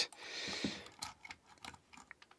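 A soft hiss at the start, then a few faint small clicks of a small screwdriver's metal tip working on the screws, wire and coil of a rebuildable atomizer deck.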